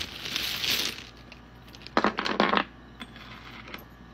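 A handful of dice and charms rattling as they are shaken, then thrown onto a wooden table, where they land in a short loud clatter about two seconds in. A few faint clicks follow.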